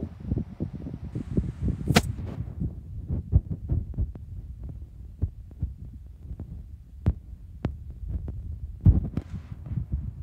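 Blaupunkt and Schallen 16-inch oscillating pedestal fans running side by side, their airflow buffeting the microphone as an irregular low rumble and thumping. A sharp click about two seconds in and two faint ticks around seven seconds.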